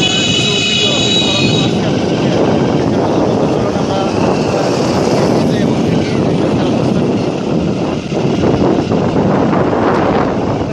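Steady engine and road noise of a vehicle heard from on board while it is moving, with wind buffeting the microphone. A high-pitched tone sounds for about the first second and a half.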